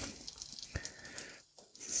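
Faint rustling and handling of food packaging as fillets are unwrapped, with a couple of small clicks about three-quarters of a second in, dying away to near silence shortly after.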